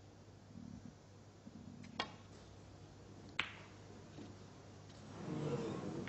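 Snooker balls: a click about two seconds in as the cue strikes the cue ball, then a sharper click about a second and a half later as the cue ball hits the object ball. Near the end an audience murmur rises.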